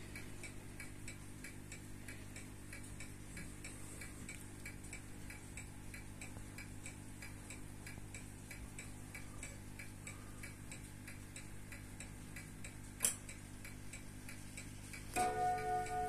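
Slava mechanical wristwatch ticking close up, a fast even tick several times a second. A single sharp click comes about thirteen seconds in, and about a second before the end a much louder buzzing ring with several steady pitches starts: the watch's alarm going off.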